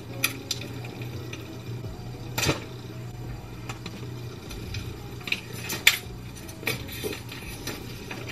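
Clear plastic shrink-wrap being peeled and torn off a phone box, with scattered sharp crinkles and crackles.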